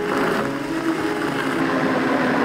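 Happycall Axlerim Z high-speed blender running, crushing ice and fruit into a thick sorbet purée: a loud, steady churning roar of the jug contents over the motor's hum.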